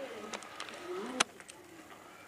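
Papers and files being handled on an office desk: a few sharp taps and clicks, the sharpest a little past a second in. Faint low sounds lie underneath.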